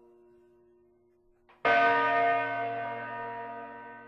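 A single bell strike about a second and a half in, loud and ringing on with many overtones that slowly fade. Before the strike, faint steady held notes linger.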